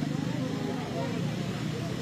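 A steady low rumble of background noise, like an engine running at idle, in a short pause between spoken words.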